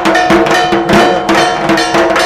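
Loud rhythmic percussion: drum strokes about four times a second under a steady ringing of struck metal, like cowbells or a gong.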